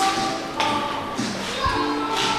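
Background music playing, with a sharp knock about half a second in and a low thud near the end as a restroom stall door is handled and swung open.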